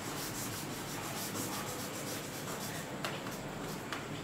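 Marker pen writing on a sheet of chart paper: a steady scratchy rubbing as the word is written, with a couple of sharper strokes near the end.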